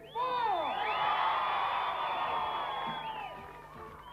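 A crowd cheering and whooping, many high voices at once, breaking out right at the start, loudest about a second in, then fading away over the next two seconds.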